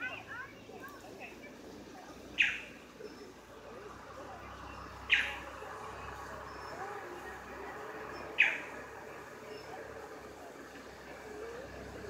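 A bird repeats a short, sharp, high call about every three seconds, over a low murmur of people talking.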